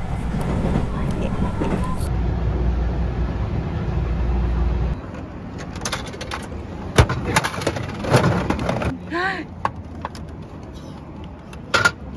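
Steady low rumble inside a moving train carriage, cut off suddenly about five seconds in. It gives way to a capsule-toy (gachapon) vending machine being worked: a run of sharp clicks and knocks as the dial is turned and the plastic capsule drops out, with a brief voice near nine seconds and two quick knocks near the end.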